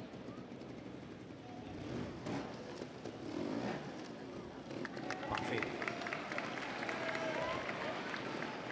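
Trials motorcycle engine revving in short bursts as the bike climbs over logs, with a crowd murmuring in the arena.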